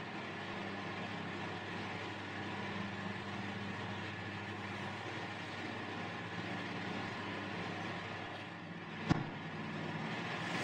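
Several electric cooling fans running steadily in a room: a constant hum with an even rushing noise. One sharp click comes about nine seconds in.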